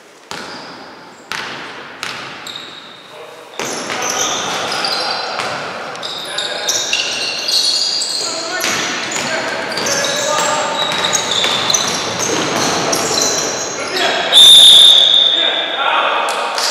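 Basketball game sounds in a large gym. A basketball bounces on the floor about once a second at first. Then sneakers squeak, players call out and the ball is dribbled, and near the end comes one loud, steady whistle blast, typical of a referee's whistle.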